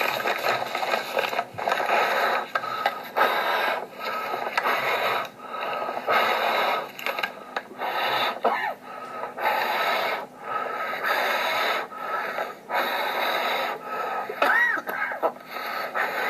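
A man breathing hard in and out of a paper bag, in loud rushes about once a second, as in hyperventilation during a panic attack.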